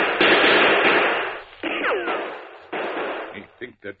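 Radio-drama gunfight sound effects: several gunshots, each with a trailing echo. The shot about a second and a half in is followed by a falling ricochet whine, and another shot comes near three seconds, all through the narrow sound of a 1950s broadcast recording.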